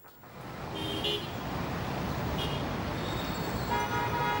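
Street traffic noise with vehicle horns: two short toots about one and two and a half seconds in, then a longer held horn near the end.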